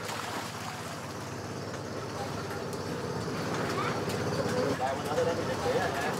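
An engine running steadily with an even low throb, with brief voices calling out about two thirds of the way through.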